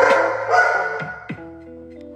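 A dog barks twice in quick succession, at the start and about half a second in, over music.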